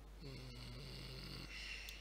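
A man's low, wordless hum lasting a little over a second, with no words in it.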